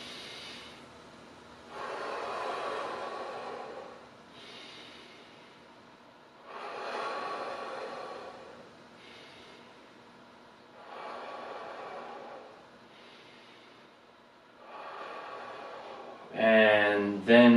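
A man breathing deeply in and out through his mouth, one slow breath after another in time with big arm circles. Each breath lasts about two seconds, and a louder one comes every four to five seconds with softer ones between.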